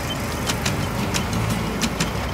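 Engine of an open off-road buggy (ATV) running steadily while it is driven along a bumpy dirt trail, with irregular sharp clicks and knocks over the rumble.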